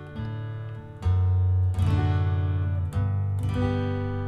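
Yamaha acoustic guitar strummed through a short chord progression, several chords each left to ring, the loudest about a second in. It is the walk-up from D major through D/F#, the thumb fretting F sharp on the low E string, to G major.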